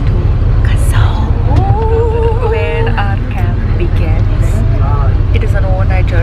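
Steady low rumble of a bus's engine heard inside the passenger cabin, with people's voices over it and a drawn-out vocal sound about two seconds in.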